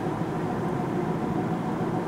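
Steady engine and road noise heard inside the cabin of a moving car, an even low rumble.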